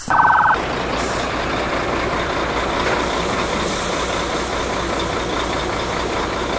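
Engine of a police armoured water-cannon truck running, under a steady wash of street noise. A brief buzzy tone sounds right at the start.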